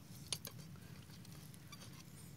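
A few faint metallic clicks of wrenches working the bolts of a Quick G1000 hand tractor's rusty gearbox casing, the clearest about a third of a second in.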